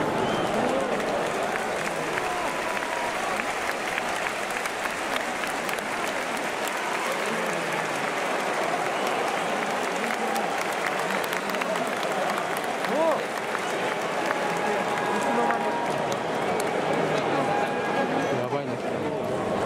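Football stadium crowd: a steady din of many voices talking, with scattered clapping.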